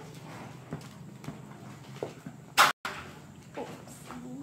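Quiet handling sounds of paper pads and packaging being picked up: a few soft taps and rustles, with one loud, brief knock about two and a half seconds in, then a split-second cut in the sound.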